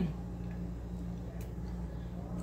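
A steady low electrical-sounding hum, with one faint light tick about a second and a half in.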